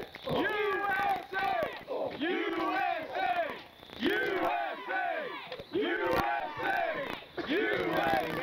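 A small crowd of children shouting and cheering, many high voices overlapping in rising and falling calls. A single knock comes about six seconds in.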